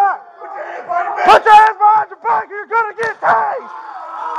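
A man crying out as he is shocked with a Taser: a loud yell about a second in, then a quick run of short, strained cries, several a second.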